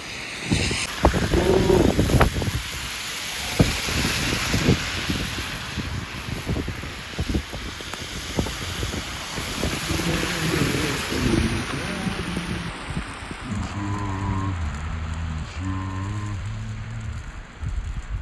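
Wind rushing and buffeting on a phone microphone out in a snowstorm, with scattered knocks. In the second half, low tones step up and down under the wind.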